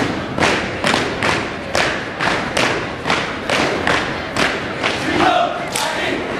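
Step team stepping in unison: a steady beat of sharp stomps and claps at about two a second, ringing in a school gym, with a short group chant about five seconds in.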